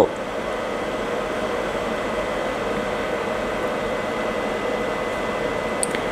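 Steady fan-like hum with a faint whine running under it, and a small click near the end.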